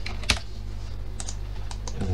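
Computer keyboard keys tapped a few separate times as a value is typed into a field, the loudest tap about a third of a second in, over a steady low hum.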